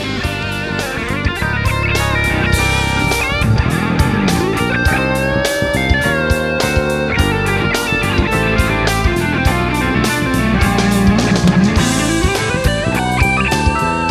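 Recorded rock music: a drum kit keeps a steady, busy beat under an electric guitar lead with bending, sliding notes.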